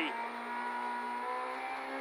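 Peugeot 208 R2 rally car's engine pulling steadily in second gear, heard from inside the cabin, with a faint high whine slowly rising over it.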